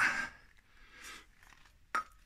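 Mostly quiet handling, then a single sharp metallic clink near the end as a removed Toyota 1G-GTE turbocharger is picked up off the floor.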